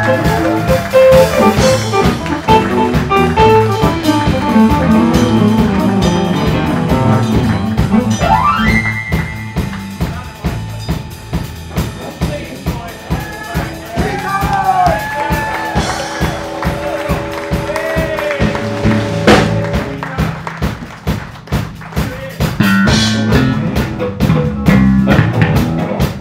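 Live blues band playing a steady drum beat and bass line under a keyboard solo. There is a quick rising run partway through, then a stretch of long held notes.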